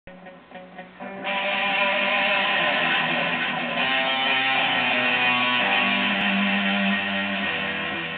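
Electric guitar played solo: a few short picked notes, then about a second in, loud sustained chords and notes that ring on and begin to fade near the end.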